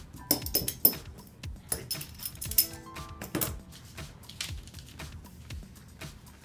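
Heavy steel washers used as pattern weights clinking against each other as they are picked up off a paper pattern and stacked, in two clusters of sharp metallic clinks with a brief ring. Background music plays underneath.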